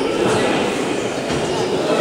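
Steady murmur of many spectators' voices in a large, echoing sports hall, with no single voice standing out.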